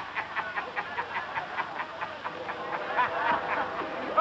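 Men laughing, a rapid run of short ha-ha pulses that eases a little midway and picks up again.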